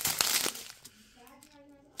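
Thin plastic drill bags crinkling and rustling as they are handled, for about the first second, then fading to quiet.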